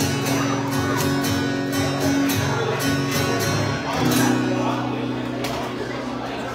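Acoustic guitar strummed in a steady rhythm, then a chord left ringing from about four seconds in.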